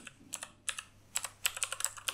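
Typing on a computer keyboard: a quick run of about a dozen keystrokes, typing a single word.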